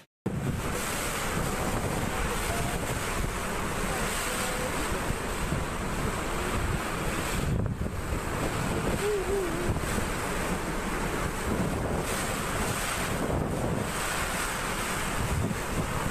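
Typhoon-force wind and heavy rain, a steady loud rush of noise, with gusts buffeting the microphone. About nine seconds in, a faint wavering whistle rises above the roar.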